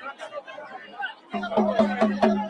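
Crowd voices chattering, then about a second and a half in, music with rapid, evenly spaced drum strikes comes in suddenly over a steady low tone.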